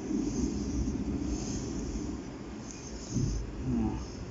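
A red fabric lint brush stroking through a cat's fur, making soft swishes about once a second over a low steady rumble.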